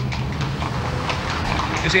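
Carriage horses' hooves clip-clopping on the street over steady background noise.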